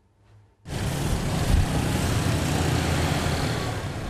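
Motorbike and scooter traffic on a busy city street: a steady wash of engine and tyre noise that starts suddenly just under a second in.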